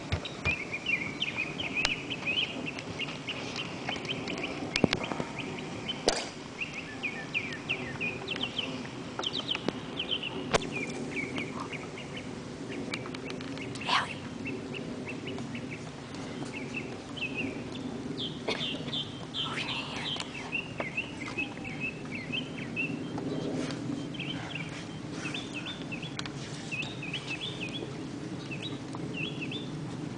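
Small birds chirping in quick, repeated short notes throughout, with a few sharp clicks scattered through the first half over a steady low background.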